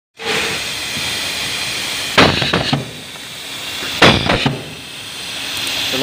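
Pneumatic cable insulation cutting machine: a steady hiss of compressed air, then two sharp bangs about two seconds apart, each followed by a short blast of exhausting air as the air cylinder strokes.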